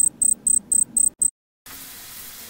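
Alarm clock going off: six short high-pitched beeps, about four a second, that stop abruptly. A steady hiss of shower spray starts near the end.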